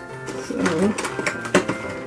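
Fingers picking at and tearing open a cardboard advent calendar door, with a short sharp rip about one and a half seconds in.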